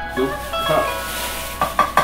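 Kitchen handling noise while minced garlic is scooped from a plastic bag: a rustling haze, then near the end a quick run of light taps about six a second, under plucked-string background music.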